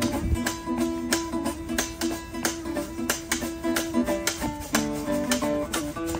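Acoustic guitar strummed in a steady rhythm, its chords ringing between strokes.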